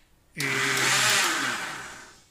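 Bosch food processor motor with the blender jug fitted, switched on briefly at the knob: it runs with a loud whir for about a second, then winds down with a falling pitch.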